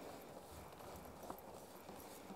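Faint footsteps and handling noise as a large paper sheet is unrolled between two people, with a few light clicks.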